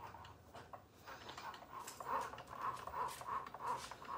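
Cricut Joy cutting machine drawing with its pen: the carriage and roller motors whir faintly in a quick series of short pulses, about three a second in the second half, as the pen writes script lettering.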